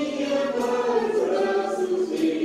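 Choir singing, the voices holding long notes.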